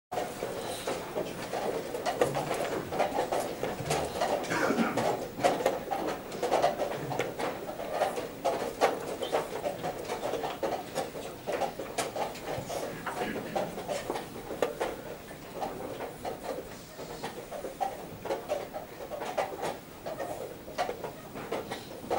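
Wooden chess pieces being set down and a chess clock being pressed during a blitz game: many short, sharp clicks and knocks, several close together, over a steady low murmur of a busy playing hall.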